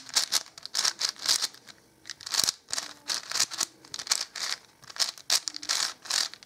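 Plastic clicking and clacking of a 5x5 puzzle cube's layers being turned in quick succession, with a brief pause about two seconds in.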